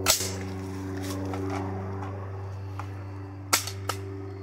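A single loud shot from an Emperor Arms Cobra 12, a 12-gauge gas-piston semi-auto shotgun, right at the start, ringing out after it. About three and a half seconds in come two sharp clacks, the action being worked by hand.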